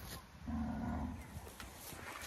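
A Brahman calf gives one short, low moo of about half a second, a little after the start.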